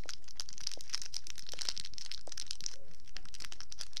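Foil packet crinkling and rustling as it is handled, a dense run of small irregular crackles.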